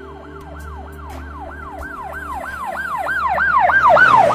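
A siren in a fast yelp, its pitch sweeping up and down about three times a second and growing louder toward the end.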